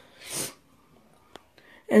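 A short breathy puff of air from the person, rising and falling in about a third of a second, then quiet with one faint click.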